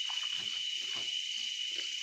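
A steady, high-pitched chorus of night insects, with one shrill, even tone held over it.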